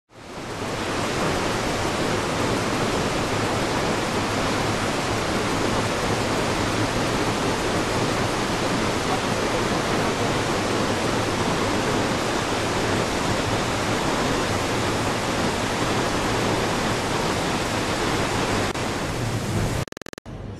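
A large waterfall's falling water rushing in a steady, even hiss that fades in over the first second and cuts off just before the end.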